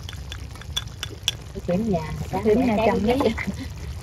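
Pork ribs simmering in a thick sauce in an aluminium pan, bubbling with many small sharp pops over a low steady rumble. A woman speaks briefly partway through.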